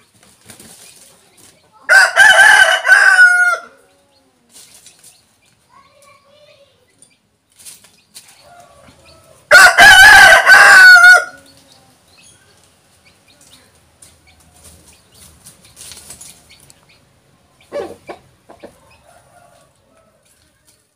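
Rooster flapping its wings and crowing twice, once about two seconds in and again about ten seconds in, each crow about a second and a half long.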